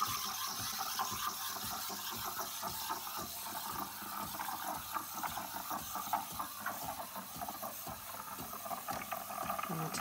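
De'Longhi Magnifica S Smart steam wand frothing milk in a stainless jug: a steady hiss of steam with irregular small crackles as the milk foams for a cappuccino.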